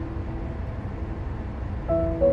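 Steady low rumble of a car driving on the road, under a faint fading music note; music notes come in again near the end.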